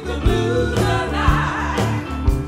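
Live blues band: several women singing together as backing vocals over electric guitar, bass and drums.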